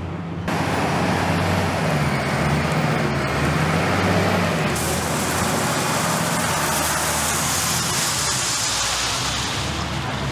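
A wheel loader's diesel engine running steadily close by, starting suddenly about half a second in, with a faint wavering high whine over it for the first few seconds.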